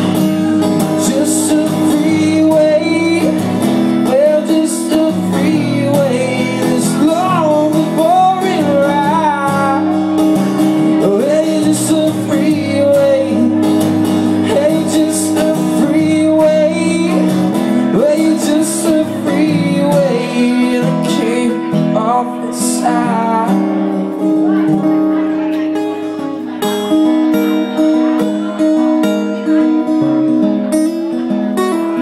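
Live solo performance: a cutaway acoustic guitar strummed in a steady rhythm while a man sings over it. The voice drops out in the last few seconds, leaving the strummed guitar.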